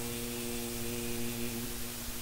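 A man's voice holding one long, steady note of Quran recitation over a microphone, stopping shortly before the end, over a steady hiss.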